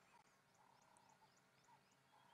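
Near silence of the bush, with faint animal calls: a quick run of thin, high chirps about four a second and two short, low croaking notes.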